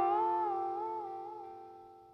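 Gibson Music City Jr electric guitar with a B-bender, a chord ringing out and fading away, one of its notes wavering slowly in pitch.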